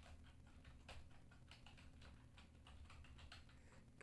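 Faint typing on a computer keyboard: an irregular run of quick key clicks.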